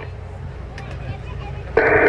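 Low, steady outdoor background rumble with no distinct event. Near the end a public-address loudspeaker cuts back in with a radio-relayed voice.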